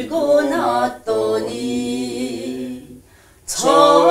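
Unaccompanied singing of a slow Korean song in held phrases, with a brief break about a second in and a longer pause for breath about three seconds in.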